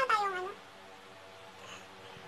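A single short meow-like call at the very start, rising and then falling in pitch over about half a second, followed by quiet room tone.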